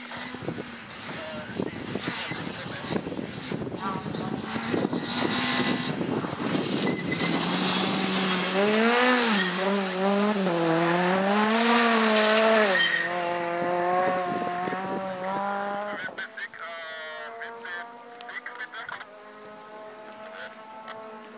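Citroën C2 rally car driven hard on a loose dirt stage, its engine revs swinging up and down with throttle and gear changes as it passes, loudest about twelve seconds in, with loose dirt thrown up. A fainter second rally car's engine follows in the last few seconds.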